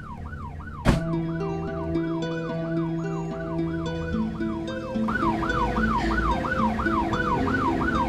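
Police car siren yelping, sweeping up and down about three times a second. About a second in a sharp hit lands, and low held music notes come in beneath the siren.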